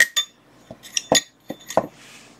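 Thin metal pads clinking against a stainless steel parts tray as they are handled: about seven short, sharp clinks, unevenly spaced.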